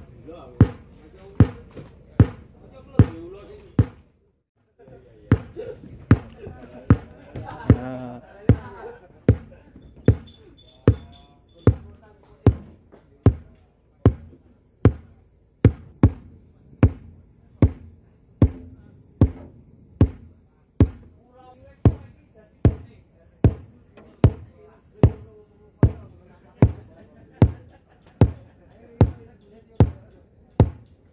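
Repeated deep thumps of a kick-drum-style test beat through a large PA sound system during a sound check, evenly spaced at about four every three seconds. The beat breaks off briefly about four seconds in.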